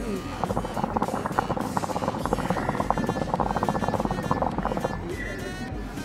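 Nargilem NPS Classic hookah bubbling rapidly in its water base during one long draw on the hose, fading out about five seconds in.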